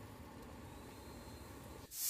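Faint steady hiss of a steaming pot of chicken, spices and freshly added water heating on the stove. It cuts off suddenly near the end.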